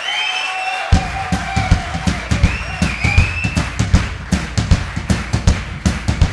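A live band's drum kit kicks in about a second in with a fast, steady beat of bass drum and cymbal hits, opening a song. High wavering tones ring above it.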